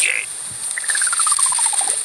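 Cartoon sound effect: a brief hiss, then a quick run of short beeping notes stepping steadily down in pitch over about a second, as the pile of paper notes falls away.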